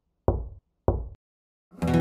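Two dull knocks about half a second apart, then a guitar chord starts ringing shortly before the end: the opening of the song.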